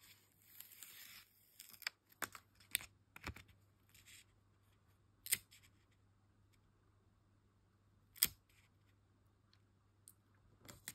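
Faint paper handling: a sticker peeled off its backing with a soft rasp in the first second, then pressed and smoothed onto a glossy album page with scattered small clicks and taps, two sharper taps at about five and eight seconds.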